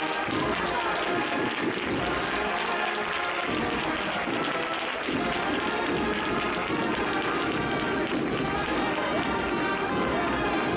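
Processional brass band playing a march, with the voices and applause of a street crowd mixed in.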